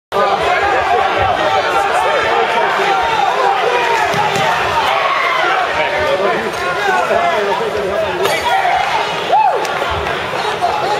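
Crowd of spectators chattering in a large hall, many voices overlapping into a steady babble, with one voice calling out louder near the end.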